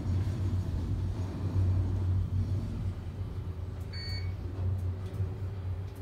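Traction elevator cab travelling: a steady low hum and rumble, with a faint steady tone joining about three seconds in and a short high beep about four seconds in.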